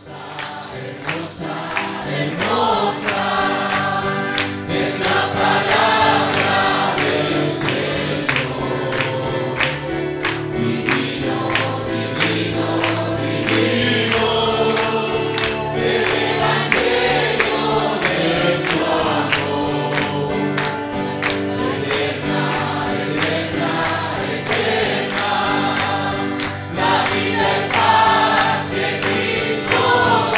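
A church congregation singing a hymn together, with hand clapping in a steady beat; the singing builds up over the first two seconds and then carries on at full strength.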